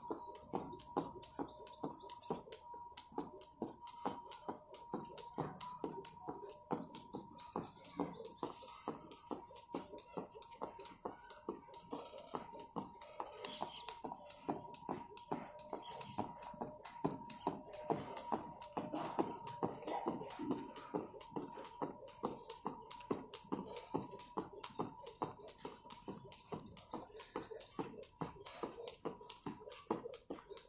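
Plastic skipping rope slapping the paving tiles in a quick, steady rhythm as a person jumps rope without a break, under background music.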